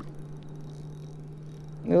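A steady low hum with faint splashing from a hooked fish thrashing at the surface beside the boat.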